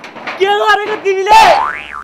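A comic cartoon-style sound effect: a whistle-like tone sliding quickly upward in pitch in the second half and cutting off, after a loud, excited voice.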